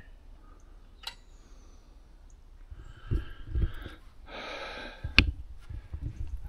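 Quiet outdoor background with a few soft knocks and clicks and a short breath near the microphone about four seconds in.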